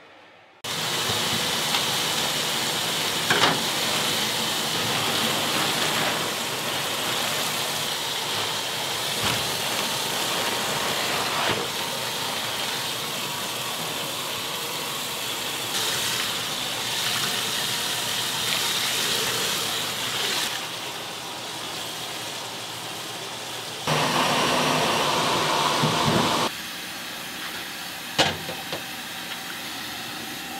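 Tap water running steadily into a stainless steel sink over noodles being rinsed by hand, with a louder stretch of a couple of seconds near the end.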